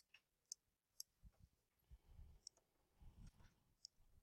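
Near silence broken by about five faint, sharp clicks spread across the few seconds, with a few soft low thumps between them.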